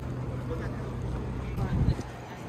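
Open-air ambience: a steady low hum with wind buffeting the microphone, swelling in a short gust near the end, and faint voices of passers-by.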